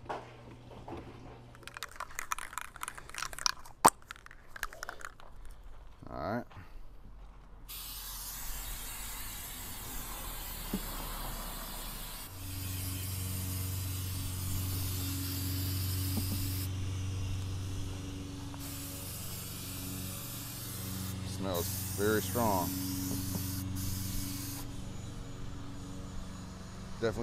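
Aerosol spray paint can hissing in long bursts onto a white utility sink, with a short break partway. A steady low engine hum joins about halfway through. Before the spraying, a few clanks and one sharp knock.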